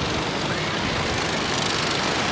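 Steady rush of wind over the onboard microphone of a reverse-bungee slingshot ride capsule as it swings and bounces through the air.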